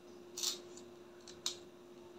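Quiet handling sounds of crystal beads and clear jewelry wire: a short soft rustle about half a second in and a single sharp click a second later, over a faint steady hum.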